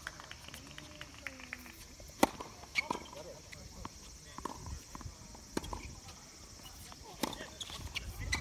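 Tennis ball pops of racquet strikes and bounces on an outdoor hard court, a few sharp hits spaced a second or more apart, the loudest about two seconds in. Faint voices are heard under them.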